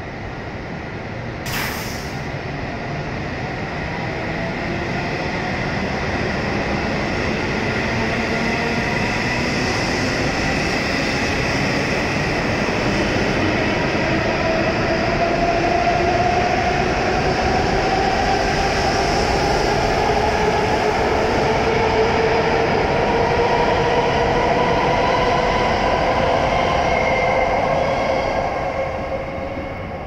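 W7 series Shinkansen train pulling out of the station: the whine of its traction motors rises slowly in pitch as it accelerates, over steady running noise that builds and then fades near the end as the train draws away. A single sharp click sounds about a second and a half in.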